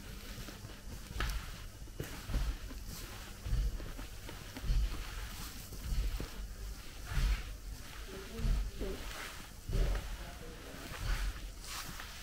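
Slow walking footsteps close to the microphone, a low thump a little over once a second.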